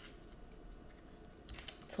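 Kipper cards being handled, with a few sharp card flicks and snaps near the end as a card is drawn from the deck.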